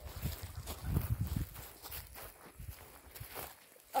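Footsteps of someone walking along a grassy field path, with low rumbling noise on the microphone through the first second and a half.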